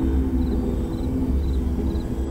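Ambient soundtrack drone: a steady low rumble under held tones, with faint short high chirps repeating about twice a second.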